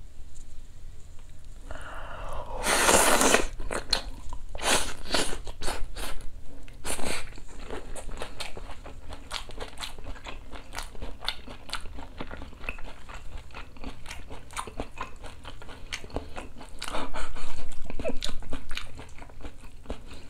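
A person biting into a crisp fried shredded-potato pancake (gamja-jeon) and chewing it: a loud crunch a couple of seconds in, then many small crisp crunches as he chews, louder again near the end.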